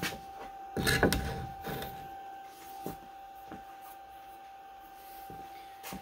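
Handling noise as a brass Z-probe touch plate and its wire are set down on the wooden spoilboard: a burst of knocks and rustling about a second in, then a few light clicks, over a faint steady high hum.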